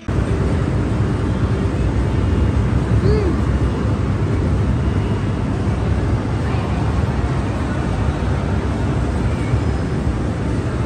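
Loud, steady, low rumbling ambience of a busy shopping-mall atrium: crowd hubbub and building noise blended into one wash.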